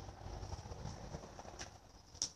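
Small child's bicycle rolling over a rough concrete yard, heard faintly as a few light taps and rattles over a low rumble, with one sharper click about one and a half seconds in.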